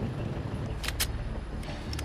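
A vehicle engine idling, a steady low rumble, with two sharp clicks close together about a second in.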